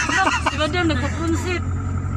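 Voices talking inside a moving car over the steady low drone of its engine and road noise in the cabin; the voices stop about one and a half seconds in, leaving the drone.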